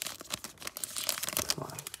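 Foil wrapper of a Donruss Optic trading-card pack crinkling and tearing as it is pulled open by hand, resisting being opened.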